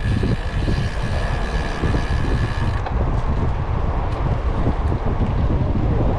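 Wind buffeting the microphone of a camera on a moving bicycle: a loud, steady low rumble. A faint steady high tone sits above it and stops about three seconds in.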